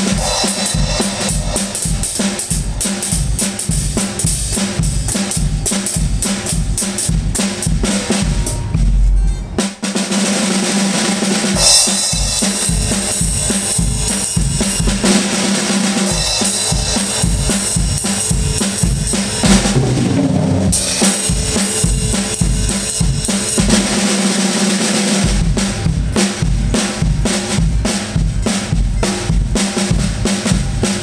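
Acoustic drum kit played to a fast rock-and-roll beat, with bass drum, snare and cymbals in a steady rhythm. The playing breaks off briefly just before ten seconds in, then picks up again.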